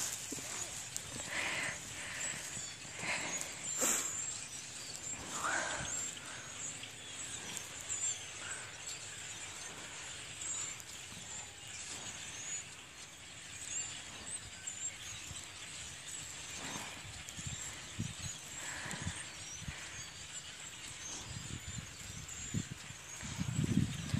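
Faint open-air background with a few faint, distant voice-like calls in the first few seconds, and low rumbling on the microphone in the last few seconds.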